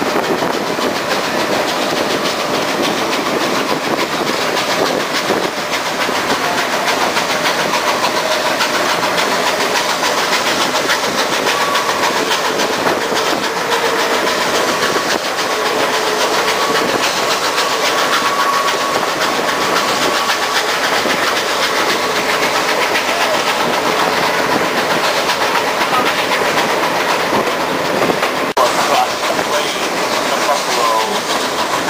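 A steam-hauled passenger train running along the track, heard from one of its open cars: a steady rattle and clatter of wheels on rails, with a faint thin whine for several seconds midway.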